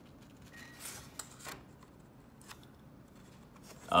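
A Rotring 800 ballpoint pen with its 1 mm refill scribbling across paper: faint scratching strokes, mostly in the first second and a half.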